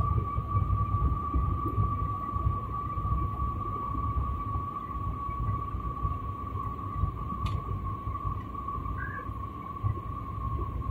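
Airliner cabin noise during the descent: a steady low rumble with a continuous high whine on top. A single faint click comes near the end.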